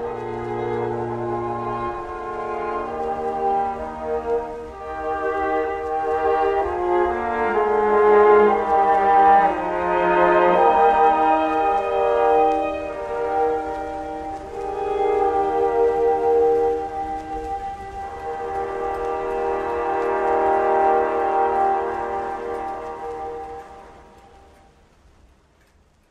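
Orchestral instrumental passage led by horns and brass over held chords, with no singing. It swells in the middle and fades out near the end.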